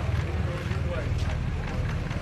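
Steady low rumble of wind buffeting the microphone, with faint crowd voices underneath.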